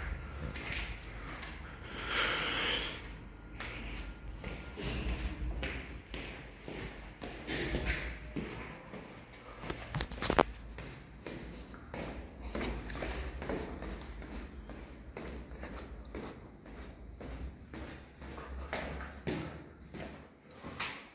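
Footsteps on concrete stairs with rustling and handling of a phone held in the hand, over a low rumble, and one sharp knock about halfway through.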